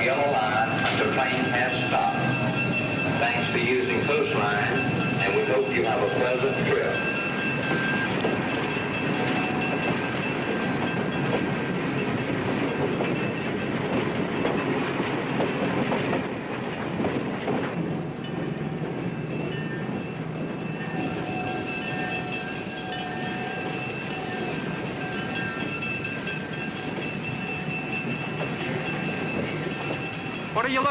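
Passenger train at a station platform: wheels clattering and squealing as it runs in, with a murmur of voices. It grows a little quieter after about 17 seconds.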